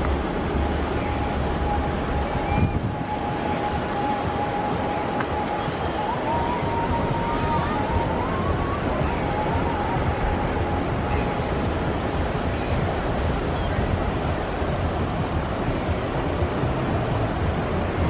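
Steady rush of wind and road noise from a moving car. Faint music with a thin wavering melody sits over it for roughly the first two-thirds.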